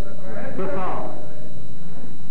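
A person's voice with a wavering pitch for about the first second, then a fainter steady background.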